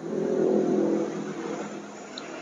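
A motor vehicle's engine passing, loudest about half a second in and then fading away.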